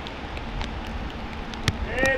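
Steady outdoor background noise with a low rumble, scattered light ticks and one sharper tap near the end, where a voice begins.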